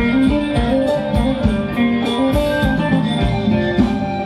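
A live band plays Thai ramwong dance music, with guitar over a bass line and a steady beat.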